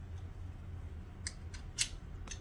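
Steel striker scraped down a flint fire starter to throw sparks: two short, sharp scrapes a little over a second in, the second louder.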